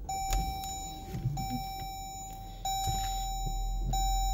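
Push-button start of a 2019 Jeep Grand Cherokee: a steady electronic dashboard chime tone sounds and repeats about every second and a quarter. The engine starts under it and idles, its low rumble getting louder about two and a half seconds in.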